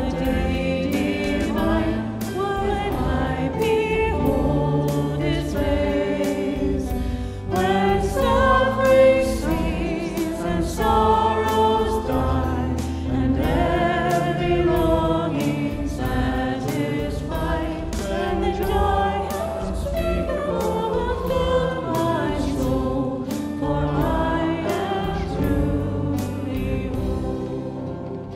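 A choir singing a hymn to instrumental accompaniment with a steady beat.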